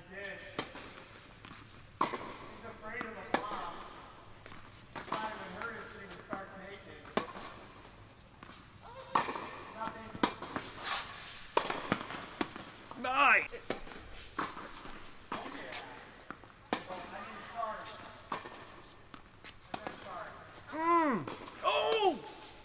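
Tennis ball struck by rackets and bouncing on an indoor hard court during a rally, sharp pops ringing in a large echoing hall.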